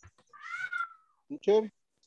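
A short high-pitched call of about half a second that rises then falls in pitch, followed about a second in by a brief spoken syllable.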